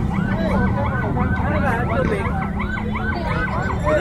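Electronic sirens in a fast up-and-down yelp, several sounding out of step with each other, over a steady low rumble and background voices.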